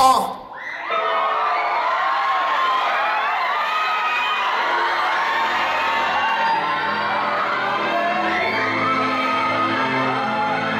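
The hip-hop track cuts off at the start and the level dips briefly. Then an audience cheers and whoops while a slow, string-led piece of music begins, its low sustained notes coming in about six seconds in.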